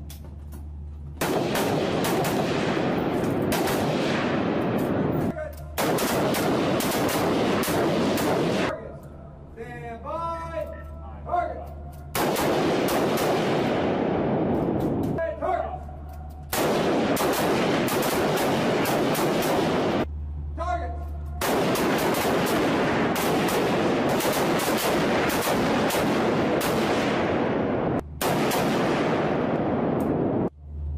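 Several Marine rifles firing rapidly and overlapping on a concrete-walled range, echoing. The shots come in dense stretches of a few seconds each, separated by short pauses in which a voice is briefly heard.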